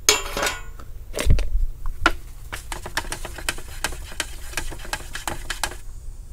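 A metal paint-can lid scraping free, then a thump, then a stir stick knocking against the inside of a gallon can of urethane basecoat as the paint is stirred, about three or four light knocks a second.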